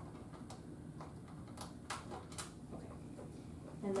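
A few light, separate clicks and taps as hands handle and shift the plastic housing of an upside-down body-shaping machine.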